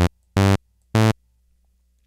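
TAL-BassLine software bass synthesizer playing short, steady-pitched bass notes from its on-screen keyboard. The end of one note is followed by two brief notes about half a second apart, each starting and stopping abruptly.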